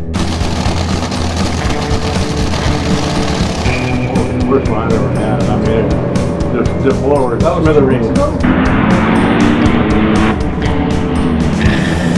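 Music with a steady beat. Two stretches of loud rushing noise sit over it, one at the start and one about two-thirds of the way through.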